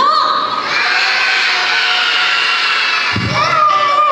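A crowd of children shouting together in one long drawn-out call, with cheering mixed in. Near the end there is a low thump, and a steady held note starts as music begins.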